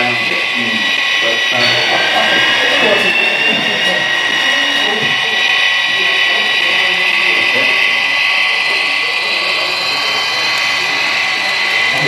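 HO-scale model diesel locomotive running on the layout: a steady mechanical whine made of several high tones, one rising in pitch about two seconds in, with voices talking underneath.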